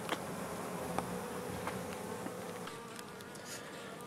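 Honeybees buzzing in flight: a faint, steady hum.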